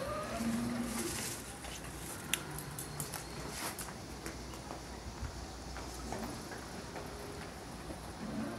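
Footsteps of a small group walking on hard floor and paving: scattered, irregular clicks and scuffs over low background noise.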